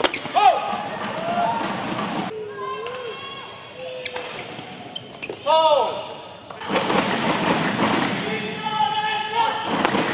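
Court shoes squeaking on a badminton court in short chirps that rise and fall, with a thud of players on the floor. From about two-thirds of the way in, a crowd in the hall cheers and shouts.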